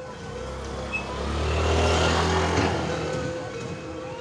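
A motor vehicle engine passing close by. It grows louder over the first two seconds, is loudest around the middle, then fades away.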